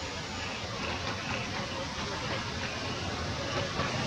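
Steady rain falling, an even hiss with no clear individual drops.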